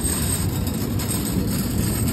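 Wire shopping cart rolling steadily over pavement.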